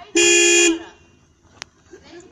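A car horn sounds one short, steady blast of about half a second. A single sharp click follows about a second later.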